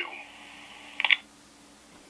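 Handheld radio's speaker at the end of a received transmission: faint hiss with a low steady hum, then a short crackle about a second in as the squelch closes, and quieter after it.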